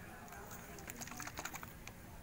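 Faint, irregular light clicks and taps of hands handling glitter-filled plastic sensory bottles.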